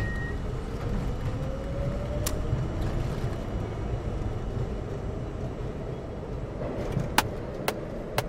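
Steady low rumble inside a moving train carriage, with a faint rising whine over the first couple of seconds. A few short, sharp clicks sound about two seconds in and twice near the end.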